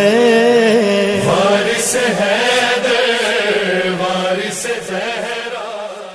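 A solo voice singing a Shia devotional chant in long, held notes with vibrato, fading out near the end.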